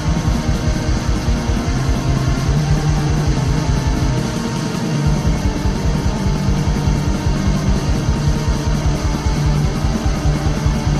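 Black metal song from a demo recording: distorted electric guitars sustaining chords over fast, steady drumming. The low drum hits drop out briefly near the middle, then come back.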